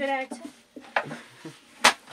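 A voice briefly at the start, then a few short sharp knocks, the loudest near the end, as a baked flatbread is pulled out of a clay tandir oven.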